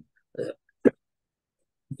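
A man's short hesitation sounds: a soft 'uh' and then one sharp, clipped vocal catch just under a second in, with dead silence between and after.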